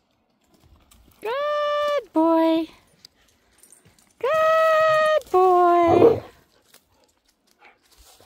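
A person calling a dog in a sing-song two-note call, a held high note dropping to a lower one, given twice.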